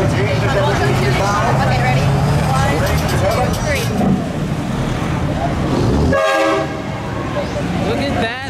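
A truck's air horn gives one short blast about six seconds in, over street traffic noise. Before it, voices and an engine's low steady drone are heard.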